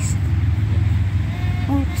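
A steady low rumble, with a short stretch of a voice near the end.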